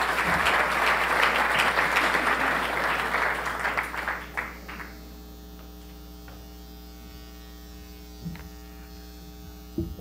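Audience applauding for about four and a half seconds, then dying away, leaving a steady electrical hum.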